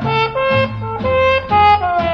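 Small-group swing jazz, instrumental: a lead wind instrument plays a melody of held notes over a bass line and rhythm section.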